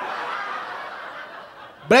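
Audience laughing, loudest at first and fading away over about two seconds.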